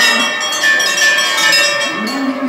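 Hanging temple bell rung repeatedly, its strokes overlapping into a continuous bright ringing.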